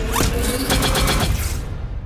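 Sci-fi film sound effect for a glowing futuristic gun: a rapid run of mechanical clicks and whirs over a steady hum. It cuts off sharply about one and a half seconds in.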